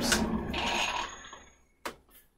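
Ridgid oscillating spindle sander with a 6-inch sanding drum winding down after being switched off, its motor noise and faint whine fading away over about a second and a half. It was shut off because the drum went on without its spacer. A single sharp click comes near the end.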